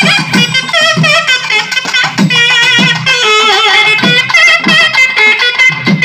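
Naiyandi melam band playing: nadaswaram reed pipes carry a wavering, ornamented melody over thavil barrel drums beating a steady rhythm.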